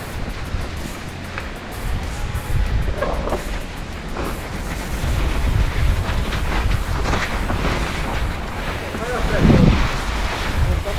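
Wind buffeting the microphone of a camera on a moving e-bike: a low, uneven rumble that swells and eases. A short voice cuts in faintly about three seconds in, and more loudly near the end.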